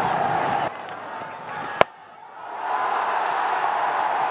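Stadium crowd cheering, cut off abruptly less than a second in. Near the middle comes a single sharp crack of cricket bat on ball, and the crowd noise swells up again after the shot.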